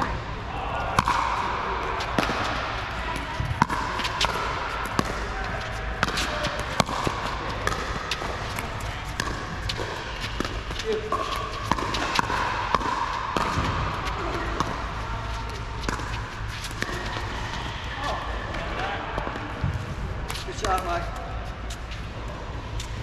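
Pickleball rally: an irregular series of sharp pops as paddles strike the hard plastic ball, along with the ball bouncing on the court, over a background of voices.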